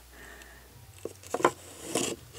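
A wooden dresser drawer being handled: faint rubbing, then a few light clicks and knocks on the wood about a second in and near the end.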